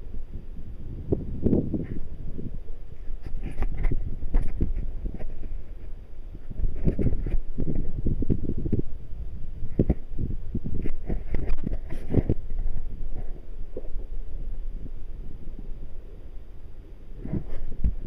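Wind rumbling on the microphone in uneven gusts at sea, with scattered knocks and rustles from the camera being handled on a kayak.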